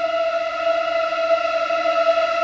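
Background music score: a single long, steady high tone held with its overtones, without a beat or melody.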